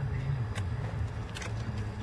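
A steady low background hum with two faint light clicks from hand work on a nut among the hoses of an engine bay.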